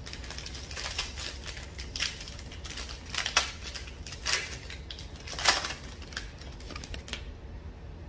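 Foil wrapper of a Panini Prizm basketball card pack crinkling and tearing as it is ripped open by hand: an uneven run of sharp crackles, the loudest about five and a half seconds in, stopping about seven seconds in.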